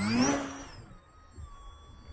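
Electric motor and propeller of a foam-board RC Spitfire throttling up at takeoff: a whine rising in pitch, loudest just after the start, then fading within about a second as the plane climbs away, leaving a faint steady high whine.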